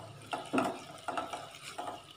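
Silicone spatula stirring and scraping around a stainless steel pan as sugar melts into caramel, in a few short scraping strokes.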